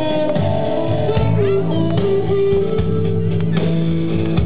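Live blues band playing an instrumental passage: electric guitars to the fore, with some bent, sliding notes, over bass and drums.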